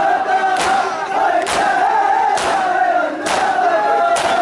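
A crowd of men chanting a noha together, punctuated four times, a little under a second apart, by the sharp slap of many hands striking bare chests at once in matam.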